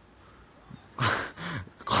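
A man's voice: two short, loud bursts about a second in, with pitch falling, after a quiet first second, running into speech near the end.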